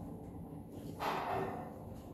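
Quiet running noise inside a lift car as it settles at the floor after arriving, with one brief soft noise about a second in.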